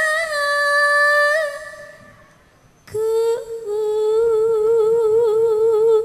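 A woman's voice singing long held notes without accompaniment. One steady note fades out about two seconds in. After a short pause, a lower phrase starts about three seconds in and wavers with vibrato.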